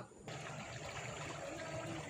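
Steady, faint rush of water flowing along a shallow concrete irrigation channel.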